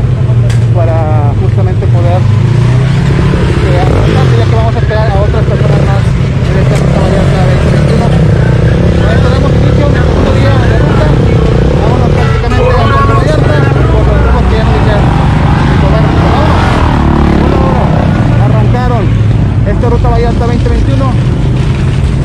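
Off-road motorcycle and side-by-side UTV engines running at idle in a group, a steady low hum, with people talking over it.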